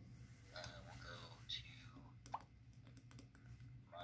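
Faint speech from a YouTube video playing through the PinePhone's small loudspeaker, with a few light clicks and a steady low hum.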